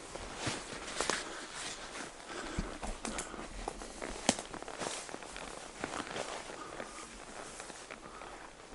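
Footsteps through tall grass and brush, with irregular rustling of vegetation brushing past and a single sharp click a little over four seconds in.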